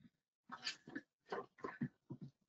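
A dog breathing in short, quick, irregular puffs, faint.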